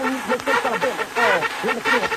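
Electronic dance music from a club DJ set, in a passage without a bass drum: a chopped, voice-like sample repeats in a loop about twice a second.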